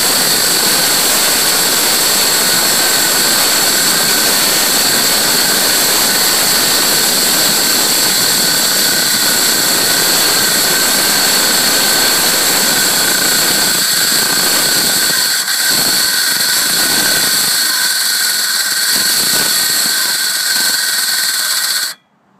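Ryobi ONE+ 18-volt cordless circular saw cutting lengthwise through a door, running loud and steady with a high whine, fed with only a light push because its battery is getting weak and its blade is a bit dull. The saw stops suddenly at the end.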